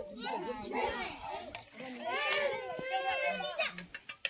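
A toddler crying: broken, wavering cries at first, then a long high wail held for over a second that breaks off just before the end.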